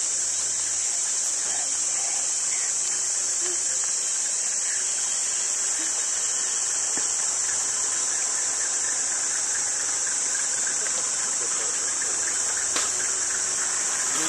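Steady, high-pitched, unbroken drone of an insect chorus, typical of cicadas in tropical forest.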